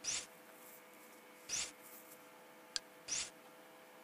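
Three short, soft swishes about a second and a half apart, with a faint click between the last two: XBMC menu navigation sounds as the home menu is stepped through. A low steady hum runs underneath.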